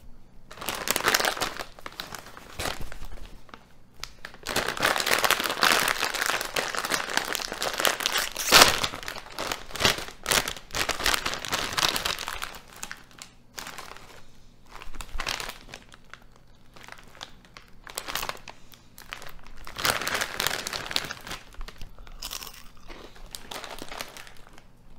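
A Ruffles potato chip bag crinkling and rustling as a hand rummages inside it for chips. The crinkling comes in bursts, is loudest and most continuous for several seconds in the first half with a sharp crackle about eight and a half seconds in, and comes in shorter bursts later.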